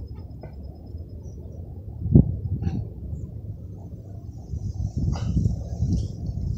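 Wind buffeting a phone's microphone: an uneven low rumble that rises and falls, with a single thump about two seconds in.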